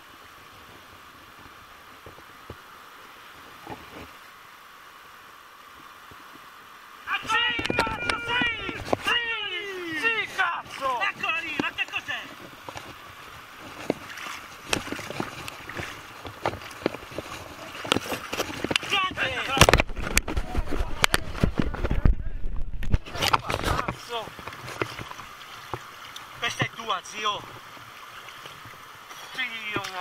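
A river running steadily, then a long stretch of knocks, splashes and heavy rumbling handling noise on a moving camera while a trout is landed in a net.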